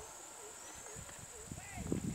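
Outdoor ambience: a steady high-pitched hum, with short chirping calls about every half second over low thumps and rustles.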